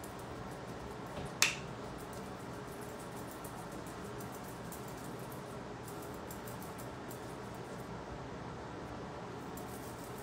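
Quiet room tone with a steady low hiss, broken once by a single sharp click about a second and a half in.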